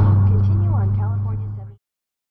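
Steady low drone inside a moving car's cabin at freeway speed, with faint talking under it. The sound cuts off suddenly near the end.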